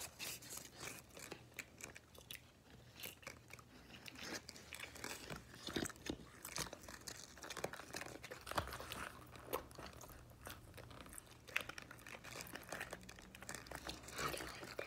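A person chewing and biting food close to the microphone: irregular, fairly quiet crunching clicks, a few a second.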